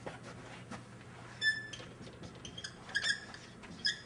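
Dry-erase marker squeaking on a whiteboard while a word is written: a string of short, high squeaks starting about a second and a half in.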